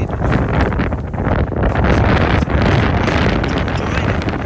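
Wind buffeting the microphone, a loud rumbling gust that builds through the middle and eases near the end.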